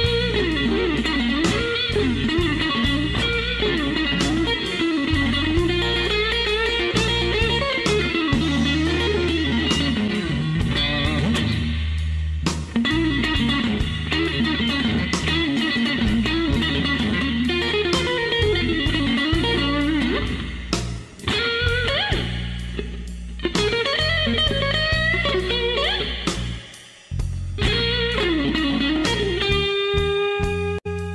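Slow electric blues played on electric guitar: a lead line with bent notes over a steady low backing, dropping away briefly twice in the second half.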